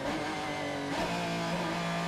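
Porsche 911 RSR race car's flat-six engine heard from onboard, holding a steady note that steps down to a lower pitch about a second in.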